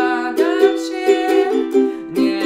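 Ukulele strummed in a steady down-down-up-up-down-up pattern, with a man singing a Polish pop melody along with it.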